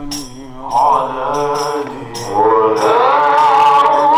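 Men chanting a Swahili maulid hymn in praise of the Prophet, a lead voice taken up by others, over a steady beat of jingling percussion strikes.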